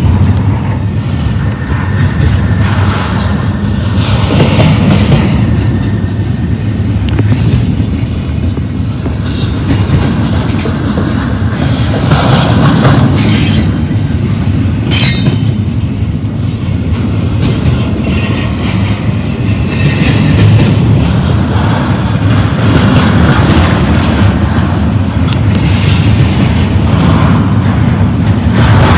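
A double-stack container train's well cars roll past close by. Steel wheels on rail make a loud, steady rumble with clatter, and a few short sharp clanks come around the middle.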